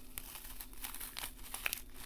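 A disc of dry green floral foam under a cracked grey coating crackling and crumbling as fingers bend it apart: a run of small, sharp crackles, the loudest near the end.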